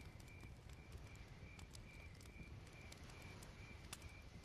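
Faint night ambience under a low hiss: a cricket chirping steadily, about three pulses a second, with a few soft crackles from a fire.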